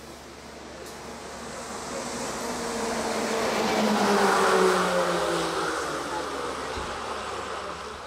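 A motor vehicle drives past close by: its engine grows louder, peaks about halfway through, then fades away, its pitch falling as it goes by.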